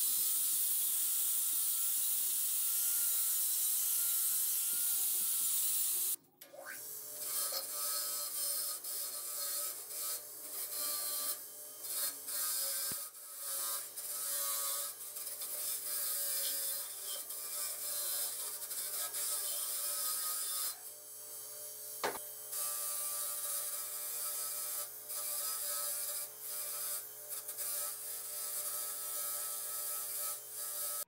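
An angle grinder with a sanding disc running against a metal gas-stove burner stand: a steady high hiss with a wavering whine. About six seconds in, a bench grinder's wire wheel takes over, its motor humming steadily while it scratches in uneven surges as small metal stove parts are pressed against it.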